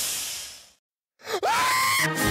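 Cartoon sound effect of liquid splashing, a hissing spray that fades out within the first second. After a short gap, a pitched note swoops up and holds steady into the start of theme music.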